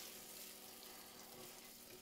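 Diced onions sizzling faintly in melted margarine in a saucepan while they are stirred.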